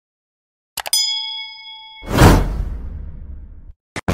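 Subscribe-button animation sound effects: a couple of quick mouse clicks about a second in, a bell-like ding ringing for about a second, then a loud whoosh that fades away.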